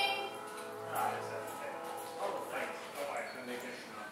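Indistinct voices talking, with a short low hum about a second in.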